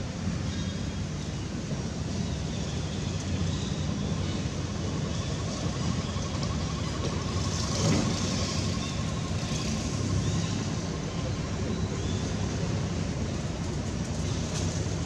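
Steady low rumble of a running motor-vehicle engine. A faint thin whine comes in through the middle, and a brief louder rustle comes about eight seconds in.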